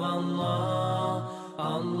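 Sung vocal chant in the style of an Islamic nasheed, with long held notes. It breaks off briefly about a second and a half in, then resumes.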